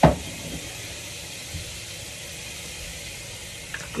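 A single sharp thump at the very start, then a steady low hiss for the rest.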